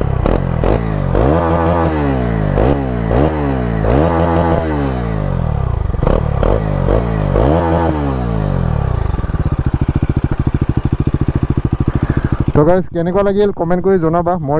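Bajaj Pulsar NS400Z's single-cylinder engine revved at a standstill, blipped up and back down repeatedly for about nine seconds. It then settles to a steady, pulsing idle.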